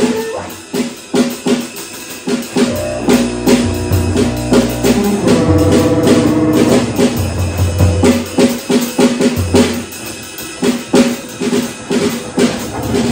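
Freely improvised music led by a drum kit, with busy, irregular drum and cymbal strokes throughout. Underneath run sustained low drones that come and go in blocks of a second or two, and a cluster of held pitched tones about halfway through.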